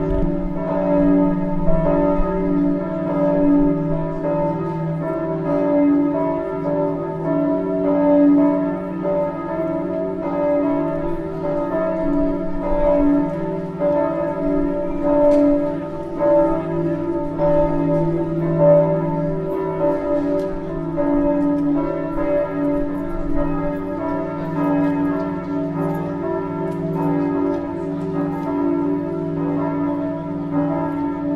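Several church bells ringing together in a continuous, overlapping peal, their tones layered and sustained without a pause.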